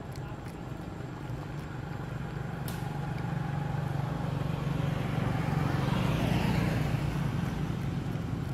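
A motor vehicle's low engine hum growing louder and then easing off as it passes, loudest about six to seven seconds in.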